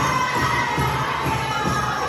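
Powwow drum beaten in a steady rhythm under a group of singers holding a high-pitched chorus line that slowly drops in pitch, with crowd noise around it.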